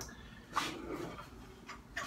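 Wooden jig being handled on a workbench: a light knock, then a short scrape of wood moving against wood, and faint handling noise.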